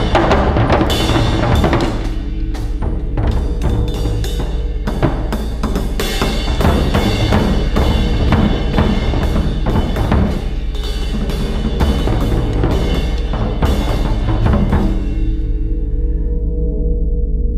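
Fast, dense drumming: a continuous stream of quick strokes with ringing overtones. The strokes die away just before the end, leaving a low ringing tone.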